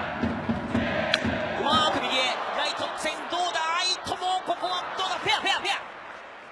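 Sharp crack of a baseball bat hitting a pitched ball, once, about a second in, over steady stadium crowd noise.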